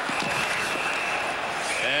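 Hockey referee's whistle blowing one long, steady, high blast over arena crowd noise, stopping play for a high-sticking penalty; a second whistle blast starts near the end.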